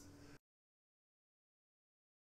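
Near silence: a faint trailing remnant of the previous sound dies away in the first half-second, then complete digital silence.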